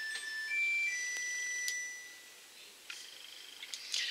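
Electronic beeping from a kitchen appliance: a short run of steady beeps at several different pitches over about two seconds, then a fainter single tone near the end.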